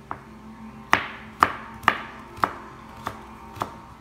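A series of sharp kitchen knocks, about two a second, each with a short ringing tail: six strong ones starting about a second in, the later ones weaker, over a faint steady hum.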